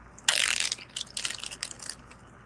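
Craft supplies being handled as a spool of metallic blending filament is picked up: a short scrape about a quarter second in, then a quick irregular run of small clicks and rattles for about a second.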